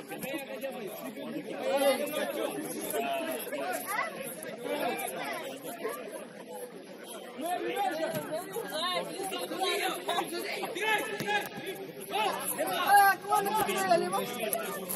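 Several people's voices calling out and talking over one another, with no clear words, louder in short bursts about two seconds in and near the end.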